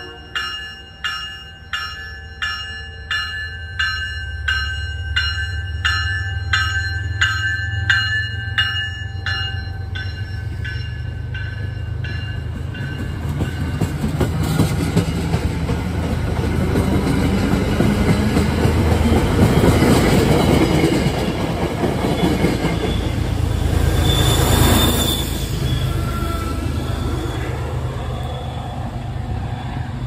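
MBTA commuter train departing: its bell rings about one and a half strokes a second for the first ten seconds or so, fading away, while the train gets under way. The coaches then roll past with a growing rumble, loudest about two-thirds of the way in, where a brief high wheel squeal sounds.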